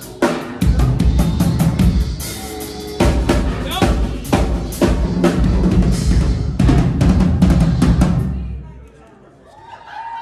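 Live drum kit played hard at close range with the band: fast kick, snare and cymbal hits over a steady low bass, dying away about eight seconds in.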